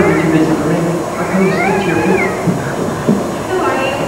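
A person's voice making a drawn-out sound without words, its pitch rising and then falling in a long arc around the middle.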